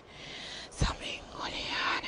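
A person whispering, breathy and unpitched, with a single short knock a little under a second in.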